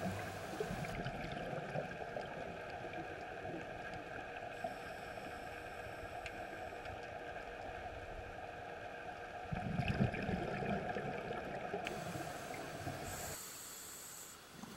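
Underwater scuba recording: a steady humming drone runs under the water noise, with a louder low gurgling rush of a diver's exhaled regulator bubbles about ten seconds in. The sound cuts off shortly before the end.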